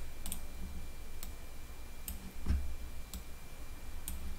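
About four light, sharp computer mouse clicks spaced roughly a second apart, one with a soft low knock, over a faint low hum.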